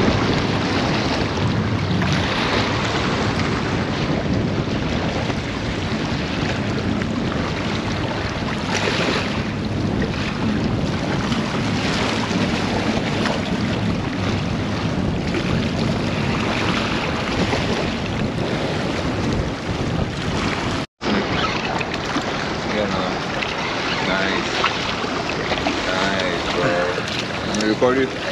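Small waves washing and splashing against the jetty's rocks, with wind buffeting the microphone; a steady noise with a brief break about three-quarters of the way through.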